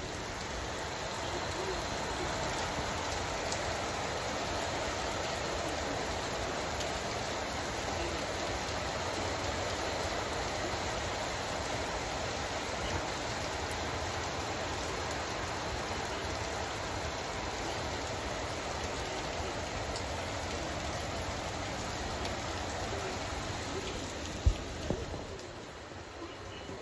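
Steady rain falling, an even hiss without a break, with one sharp knock near the end.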